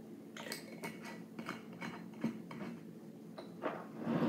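Light clinks and taps of glassware being handled as a shot of liqueur is poured into a small glass, several small sharp knocks spread through.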